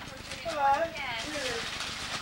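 Indistinct, high-pitched voices talking over one another, with one voice swooping up and then down sharply about half a second in.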